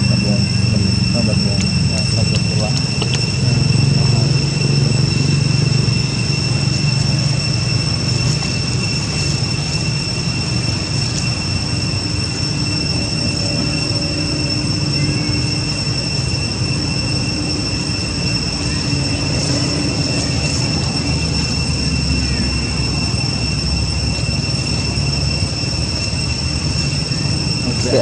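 A steady, high-pitched insect drone, one unbroken tone with overtones, over a low outdoor rumble.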